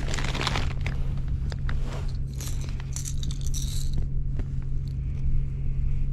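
Thin plastic bag crinkling and rustling in irregular bursts as hands handle a lure over it, with a steady low hum underneath.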